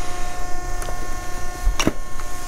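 A steady electrical hum with a low rumble beneath it, and a sharp click near the end as a cardboard box of glass cups is handled.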